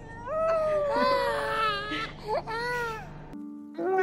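A toddler crying hard: several loud, rising and falling wails with catches of breath between them. It cuts off suddenly near the end, and a long, steady held tone then begins.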